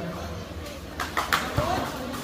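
Background murmur of a spectator crowd around a kabaddi court, with a few brief shouts about a second in.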